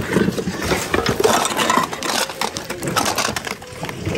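Plastic bags and bubble wrap rustling and hard plastic items clattering and knocking together as a gloved hand rummages through a bin of mixed secondhand goods: a continuous jumble of crinkles and clicks.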